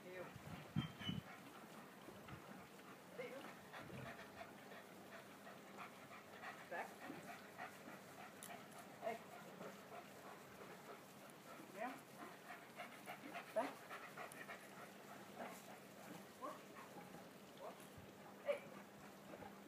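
A German Shepherd panting faintly as it trots at heel, with a few light clicks and small sounds mixed in.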